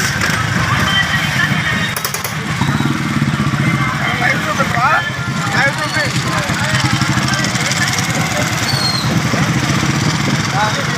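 Several small motorcycles running together at a slow riding pace, a steady engine drone, with voices calling out over it, most strongly about halfway through.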